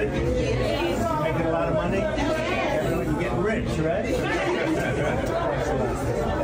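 Indistinct chatter: a man talking with a group of people at once, several voices overlapping in a room.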